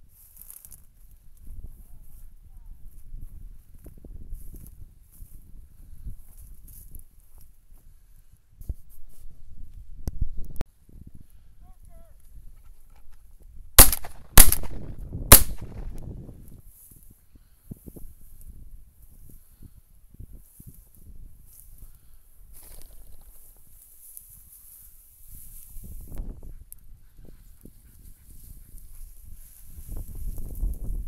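Three shotgun shots in quick succession, within about a second and a half, fired at a flushed pheasant. Before and after them there is low rustling from walking through tall dry grass, with wind on the microphone.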